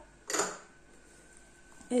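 A brief clink of kitchen dishware, a small ceramic dish against the bowl, about a third of a second in.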